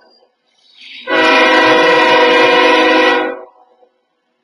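A loud, steady horn blast, a chord of several tones held for a little over two seconds, starting about a second in.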